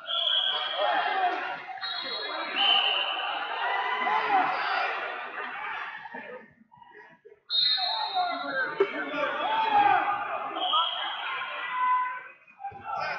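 Many overlapping voices of coaches and spectators calling and talking at once around a wrestling mat in a large hall, with a few short high steady tones mixed in. The voices drop away almost completely for about a second just past the middle, then start up again.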